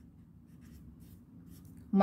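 Felt-tip pen writing on paper: faint, short, irregular scratching strokes as a formula is written out.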